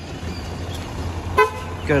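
A single short car-horn toot about one and a half seconds in, over a low steady rumble.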